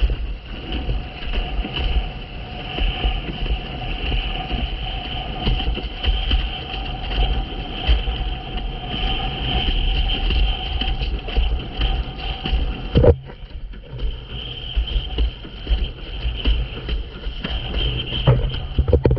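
Wind buffeting the microphone and water rushing under a planing windsurf board on choppy sea, with a steady two-tone hum running through it that cuts out briefly about thirteen seconds in.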